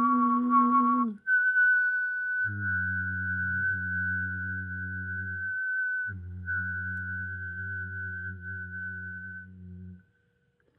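A man's voice holds a note that ends about a second in. Then a long, steady whistled note is held for several seconds, with a brief break near the middle, over a low hummed drone. The sound cuts off suddenly at the end.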